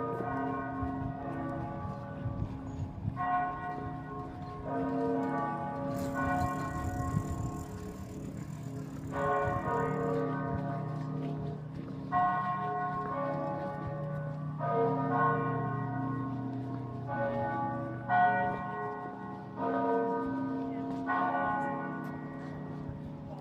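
Church bells pealing: several bells of different pitches struck one after another, a new strike every one to three seconds, each ringing on after it is hit.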